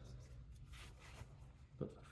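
Near silence: low room hum with faint rustling, and a single spoken word near the end.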